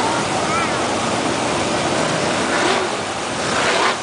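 The V8 engines of a pack of 360 winged sprint cars running flat out around a dirt oval, a steady loud wash of engine noise as the cars pass. A faint voice sits underneath.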